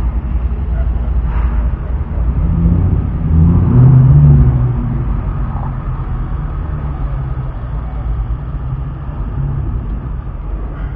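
Car engine running at low speed as the car creeps forward, heard from inside the cabin. The engine gets louder for a moment about three to four and a half seconds in, then settles back to a steady low hum.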